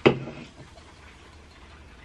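Faint, fine fizzing of a freshly poured carbonated energy drink in a glass mug, over a low steady hum.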